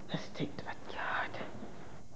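A person whispering a few words close to the microphone, over a faint steady background hiss.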